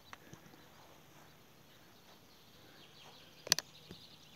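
Quiet outdoor background, then a sharp double knock about three and a half seconds in: a football being kicked.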